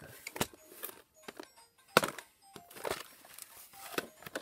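Hands handling a plastic VHS clamshell case: scattered clicks and taps of plastic, the sharpest about two seconds in.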